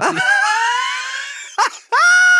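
A man's high-pitched, drawn-out shriek of laughter that slowly rises in pitch, broken off with a short second burst near the end.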